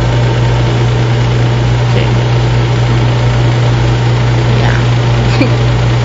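Steady hiss of a lampworking torch flame, with a constant low hum underneath.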